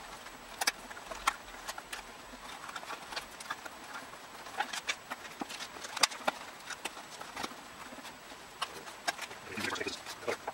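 Irregular light taps, clicks and rustles of a hardboard interior trim panel and its vinyl cover being handled and laid out on a workbench.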